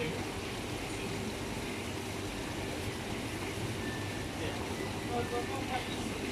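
Supermarket ambience: a steady background hum with faint, indistinct voices of other shoppers and staff.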